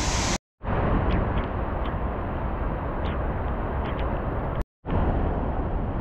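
Steady outdoor rushing noise, heaviest in the low end, with a few faint ticks. It cuts to silence for a moment twice.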